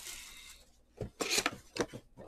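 Cardboard trading-card hobby box being handled and set down on a table: a knock about a second in, then short bursts of cardboard scraping and rubbing.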